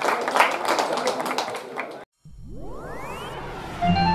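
A group clapping, with a few voices, which cuts off abruptly about halfway through. After a short silence a rising synthetic whoosh sweeps up, and a musical sting of chimes starts at the very end.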